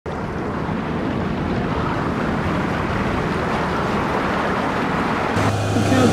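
Steady rushing underwater ocean ambience. Near the end it cuts to a steady low hum, the cabin noise of a submersible.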